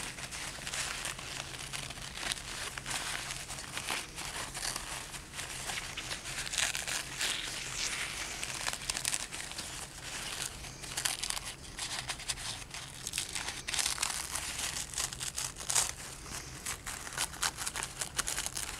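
Paper towel crinkling and crackling as it is unwrapped by hand from a cupcake, a dense run of small crackles with louder crinkles about seven and sixteen seconds in.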